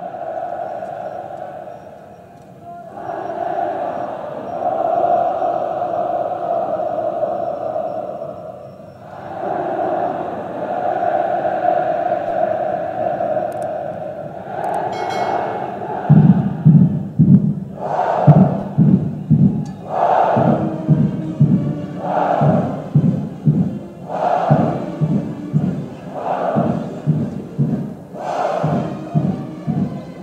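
Bugles sounding a fanfare of long held notes, each several seconds long with short breaks between. About halfway through, the military band's drums come in with a steady marching beat, a heavier stroke falling about every two seconds.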